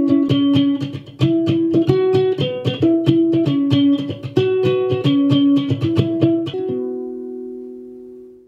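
Homemade electro-acoustic six-string krar (Ethiopian lyre) built as a stool, strummed rapidly with the right hand while left-hand fingers mute the unwanted strings, so one melody note at a time rings out over the strum. Near the end the strumming stops and the last notes ring on and fade.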